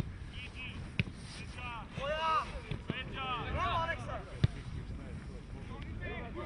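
Players' voices shouting calls across a football pitch, with a few sharp thuds of the ball being kicked, the loudest about four and a half seconds in.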